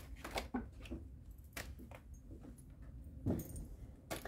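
A tarot deck being shuffled by hand: irregular soft card flicks and slaps, with one louder knock about three seconds in.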